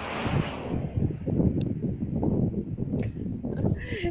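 Wind buffeting a phone's microphone: a short hiss, then an irregular low rumble, with faint clicks of the phone being handled as it is turned around.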